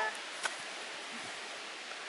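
Steady, even background hiss with no clear pitch, with a single faint click about half a second in.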